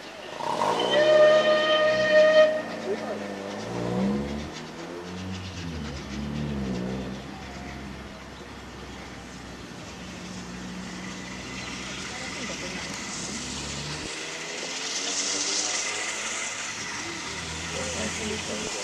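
Steam whistle of Southern Railway Battle of Britain class 4-6-2 No. 34067 Tangmere, one steady blast of about two seconds starting a second in. Then the locomotive draws closer with a hiss of steam that grows louder near the end.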